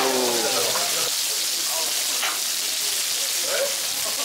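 Gopchang (beef small intestines), potatoes and onions sizzling in hot fat on a tabletop pan, a steady hiss.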